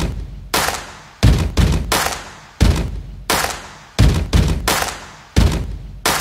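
About a dozen loud, sharp percussive hits in uneven groups, each dying away within half a second: impact sound effects laid over an intro title sequence.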